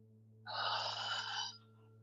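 A person's breath, heard once for about a second starting about half a second in, a rushing breath through the mouth taken while holding a standing forward fold.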